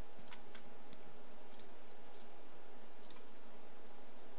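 Computer mouse clicking several times at uneven intervals over a steady faint hiss.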